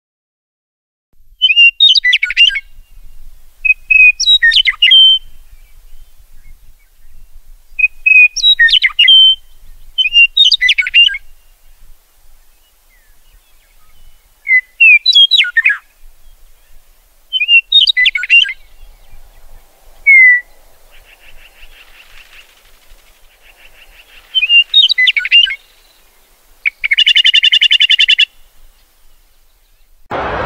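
A songbird singing short, varied chirping phrases every few seconds, ending in a buzzy trill near the end.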